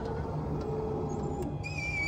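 Wheelchair-accessible van idling with a steady low hum. Near the end, a short high-pitched tone rises in pitch.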